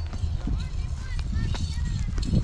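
Footsteps on dry wheat stubble, with an indistinct voice.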